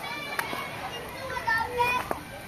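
High children's voices talking and calling out, with short rising and falling calls.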